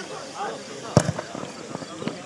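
A football kicked hard once, about a second in, as a corner kick is taken, with voices of players and spectators calling around it.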